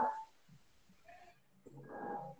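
Video-call audio, mostly quiet: a voice trails off just after the start, then a faint, brief pitched sound comes near the end.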